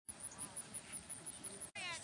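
Foxhounds whining and yelping, with a louder falling cry near the end.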